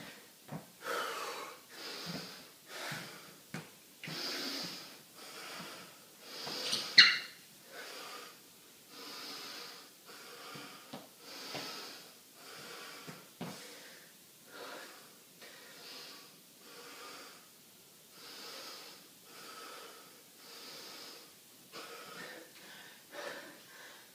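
A man breathing hard through his nose, out of breath after a bout of exercise: a steady run of deep breaths in and out, about one a second, with one sharper, louder breath about seven seconds in.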